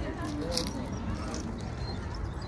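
Faint, indistinct voices over a steady low rumble of outdoor background noise, with a brief sharp click about half a second in.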